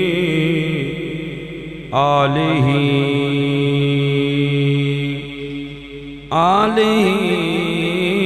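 A man chanting the Arabic opening praises of a sermon in a long, ornamented melodic voice into a microphone, holding each note with a wavering pitch. New phrases start about two seconds in and again about six seconds in.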